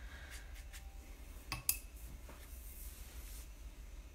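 Faint rubbing and light clicks of a paintbrush working on watercolor paper, with one sharper click about a second and a half in, over a steady low hum.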